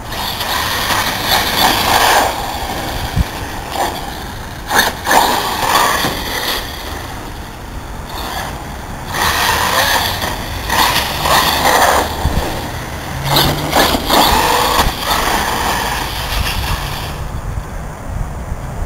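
Cen Matrix truggy with a brushless electric motor and Castle Mamba Monster speed control, driven on asphalt: its tyre and drivetrain noise surges several times, a few seconds at a time, as it speeds by and away, with a few short sharp knocks.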